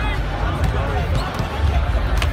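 Basketballs bouncing on a hardwood arena court, with people talking.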